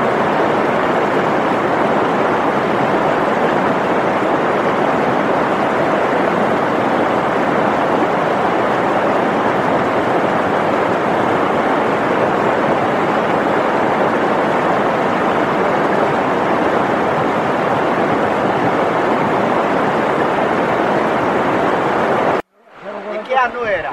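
Steady, even rushing of river water, loud and unbroken.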